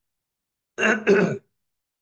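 A man clears his throat once, a short two-part 'ahem' about a second in, with dead silence on either side.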